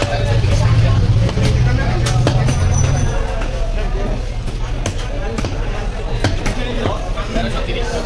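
A large knife cutting through fish flesh and striking the chopping block: sharp knocks at irregular intervals. Market voices run in the background, with a low rumble over the first three seconds.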